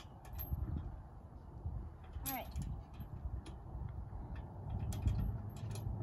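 Playground swing in motion, its chains clicking now and then with each swing, over a steady low rumble of wind on the microphone.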